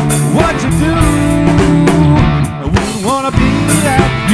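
A live cover band playing amplified rock and R&B, with electric keyboard, electric guitar and a drum kit. Sliding, bent melodic notes run over a steady bass and drums.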